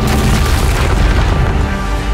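A deep cinematic boom hits at the start and spreads into a loud, noisy rumble that fades over about a second and a half, over the trailer's music.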